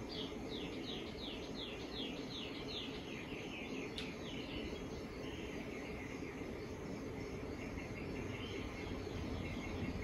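Night-time nature sounds: a run of quick falling chirps, about three a second, that fades out around four seconds in, with a steady high insect trill like crickets running under and after it. A single faint click about four seconds in.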